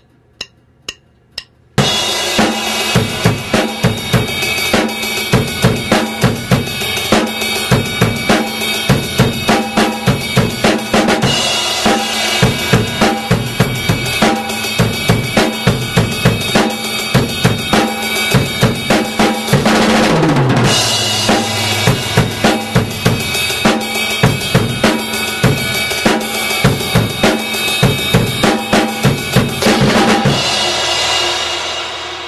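Drum kit played in a steady rock beat, with kick, snare and cymbals, after a count-in of a few sharp clicks. The bell of the ride cymbal rings out distinctly over the beat, cutting through the rest of the kit. About two-thirds of the way through there is a short fill that falls in pitch before the beat resumes.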